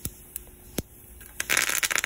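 Mustard seeds popping in hot oil in a small pan, a few sharp separate pops, then about three-quarters of the way through a sudden loud sputtering sizzle as curry leaves hit the oil of the tempering.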